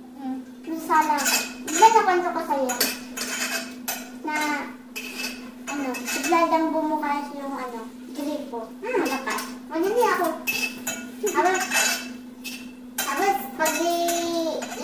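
Cutlery clinking and scraping on dinner plates and bowls at a meal, under women's conversation, with a steady low hum beneath.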